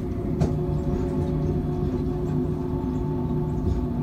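Cabin sound of a Mitsubishi Crystal Mover automated people mover running at steady speed: a low rumble under a steady hum made of several held tones, with a single click about half a second in.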